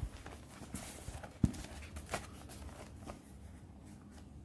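Notebook pages being turned and handled by hand: light paper rustles and small clicks, with one sharper, louder thump about one and a half seconds in.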